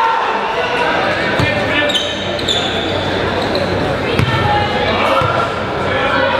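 A basketball bouncing on a gym floor a few times during live play, with a burst of high sneaker squeaks about two seconds in, over crowd and player voices echoing in the gym.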